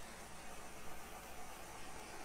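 Small handheld torch burning with a steady hiss as its flame is passed over wet acrylic pour paint, the step that brings cells up through the surface.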